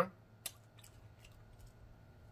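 Faint, close-up mouth sounds of chewing: one sharper click about half a second in, then a few soft scattered ticks.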